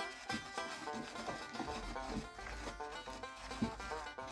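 Background music with plucked string notes, under a faint rubbing scrape of a wooden stick stirring a thick soap mixture in a plastic bucket.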